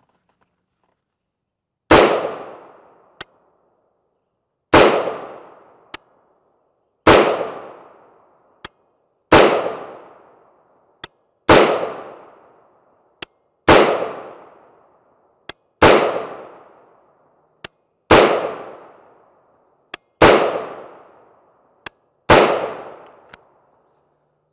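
Ten single shots from a 7.5-inch-barrel AR-15 pistol firing .223 Remington 55-grain full metal jacket ammunition, a little over two seconds apart, each sharp report ringing out in an echo. A faint sharp click follows each shot about a second later.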